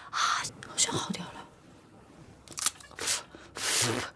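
A woman's short, noisy breaths and gasps, about five in four seconds, the last one the longest.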